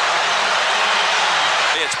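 Arena crowd cheering, a loud, steady roar of many voices, in reaction to a slam dunk.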